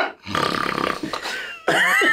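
A man draws a loud, rough breath in through his open mouth while smelling a glass of stout, lasting a little over a second, and laughter starts near the end.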